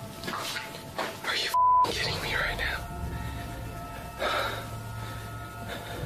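Startled voices of people exclaiming and talking. About a second and a half in, a short high-pitched censor bleep cuts over them and masks a word.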